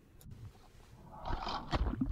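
Muffled rush and gurgle of water picked up by an underwater camera, starting about a second in after near silence.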